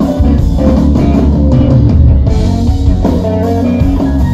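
Live blues-rock band playing loud: electric guitar lead lines over bass guitar and drum kit, with no singing.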